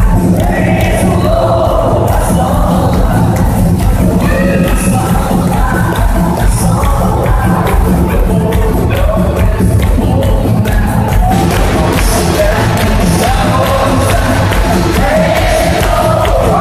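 Loud live band music with sung vocals in a large arena, with the crowd's voices mixed in.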